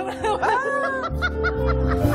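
A woman laughing over music; about halfway through, the talk show's house band comes in with a heavy bass line.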